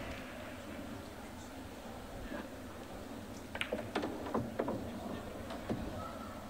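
A pool shot: a run of short, sharp clicks of the cue tip on the cue ball and of balls striking each other, a little past halfway through, over a steady low hall background.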